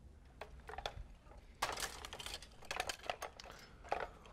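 Quiet room with faint, scattered light clicks and rustles of handling, clustered around the middle.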